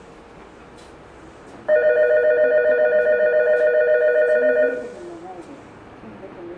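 Station platform's electronic departure bell ringing, a steady warbling ring of two close tones that starts abruptly about two seconds in and stops about three seconds later, signalling that the train is about to leave.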